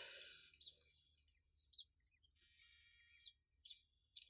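Near silence with a few faint, short bird chirps scattered through it.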